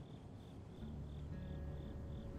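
A cricket chirping in a steady, even rhythm, about three to four chirps a second, with soft, low sustained film-score music coming in about a second in.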